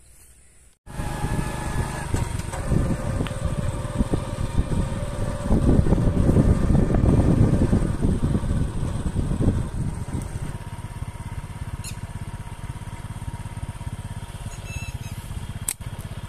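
A small engine running steadily at close range, starting abruptly about a second in and growing louder for a few seconds in the middle.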